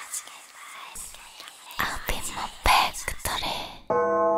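Breathy whispered female vocals from a quiet, sparse stretch of a K-pop song, with a few soft clicks. They stop abruptly just before a sustained synth chord comes in at the very end.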